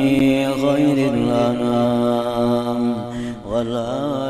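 A man's voice chanting in an ornamented devotional style. It holds one long note for about two and a half seconds, then moves into a wavering, decorated line near the end.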